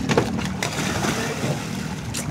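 Sea water splashing around a boat's outrigger as children swim, over a steady noisy wash with a faint low hum.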